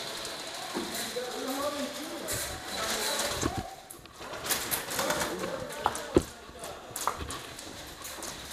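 Faint voice sounds with no clear words, with scattered sharp clicks and knocks; the loudest knock comes about six seconds in.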